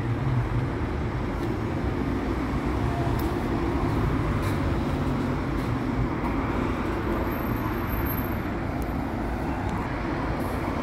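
Steady road traffic noise from cars driving along a busy city street, with a low, even rumble of engines and tyres.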